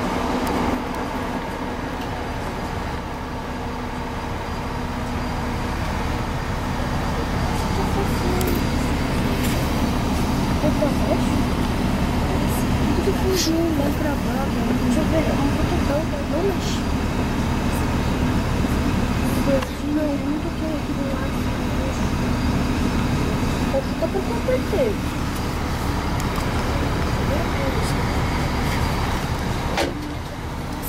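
Steady low rumble and engine hum heard from inside a moving road vehicle, with traffic noise around it and indistinct voices now and then.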